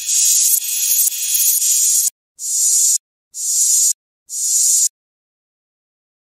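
Reversed trap sound-effect samples of high, hissing noise: one long stretch for about two seconds, then three short swells about a second apart, each cutting off abruptly. They stop about five seconds in.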